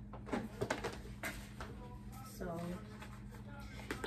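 A few light taps and rustles of paper and cardboard being handled, in the first second and a half.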